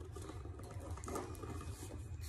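Faint scraping and rustling of hands working at a small cardboard box, with a few light clicks, over a steady low hum.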